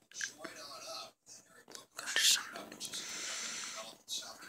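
Soft, whispered speech close to the microphone, in short broken phrases.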